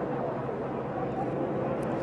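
A pack of NASCAR stock cars at racing speed, their V8 engines blending into one steady drone.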